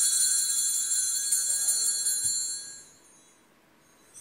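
Altar bells rung at the elevation of the chalice during the consecration: a bright, shimmering jingle that fades out about three seconds in.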